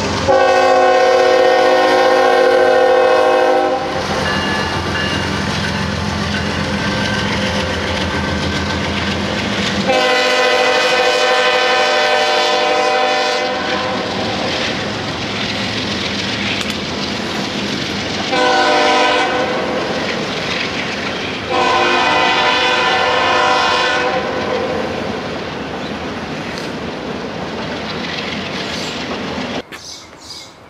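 Freight locomotive's multi-chime air horn sounding four blasts, long, long, short, long (the standard grade-crossing signal), over the engine rumble and the steady clatter of a double-stack intermodal train's wheels passing on the rails.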